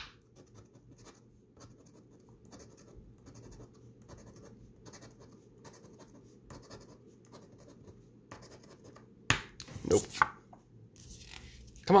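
A scratch-off lottery ticket being scratched with a red scratcher coin: a long run of faint, quick scraping strokes across the card's coating, with one sharp click about nine seconds in.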